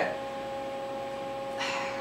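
A steady electrical hum with a few high tones, with a short breath near the end.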